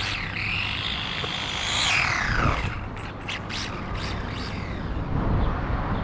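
Carisma GT24 1/24-scale RC rally car's electric motor whining, rising in pitch for about two seconds and then falling away, followed by a few short bursts, over a steady low rumble.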